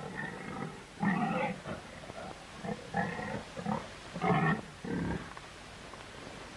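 Domestic pigs grunting and squealing in a series of short, separate calls about a second apart.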